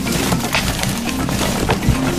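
Hands stirring through a heap of paper lottery tickets and envelopes in a bin, a rustle of many short paper crinkles. A steady background music bed runs underneath.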